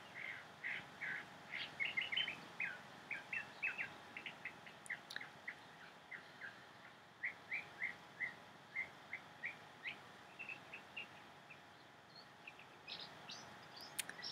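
Faint bird chirping: a scatter of short, high notes, several a second, with a lull about halfway through before they pick up again.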